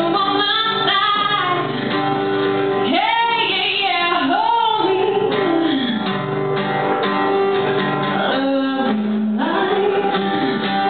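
A woman singing a slow melody with long, sliding held notes over strummed acoustic guitar.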